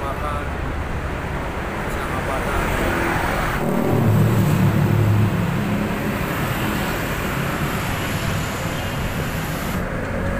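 Road traffic passing close by, with a motor scooter riding past; it is loudest about four to five seconds in.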